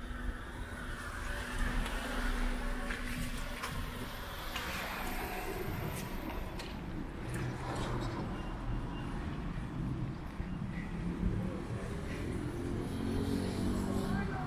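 Street traffic with car and truck engines running close by: a low, steady engine hum over a continuous rumble.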